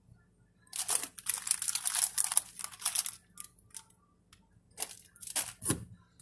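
Close crinkling and rustling handling noise at the phone's microphone: a dense stretch of about two seconds starting just under a second in, then three short bursts near the end.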